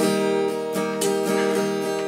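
Acoustic guitar being strummed: a few strokes, with the chords ringing on between them.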